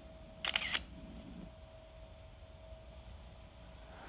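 SLR camera shutter firing once: a quick cluster of sharp mechanical clicks about half a second in, followed by a faint steady hum.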